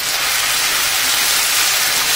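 Stir-fried noodles sizzling steadily in a hot frying pan.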